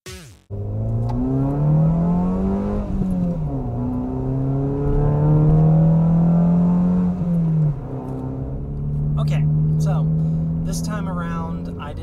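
Mazda2's 1.5-litre four-cylinder engine with an aftermarket exhaust, heard from inside the cabin, accelerating through the gears. Its pitch climbs, falls suddenly at an upshift about three seconds in, climbs again, falls at a second upshift, then holds steady at cruise.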